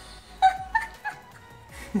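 A woman's high-pitched, squealing laughter, a few short squeals, over quiet background music.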